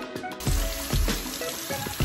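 Salon shampoo-basin hand sprayer running water over hair, a steady hiss that starts about half a second in, under background music.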